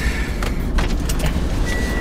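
Road and engine noise inside a moving car's cabin: a steady low rumble with a couple of light clicks in the first second.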